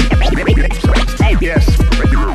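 Turntable scratching: a vinyl record pushed back and forth under a JICO J44A 7 stylus and chopped with the mixer crossfader, giving quick scratched sounds that sweep up and down in pitch. It runs over an electro beat whose deep kick drums drop in pitch, about three a second.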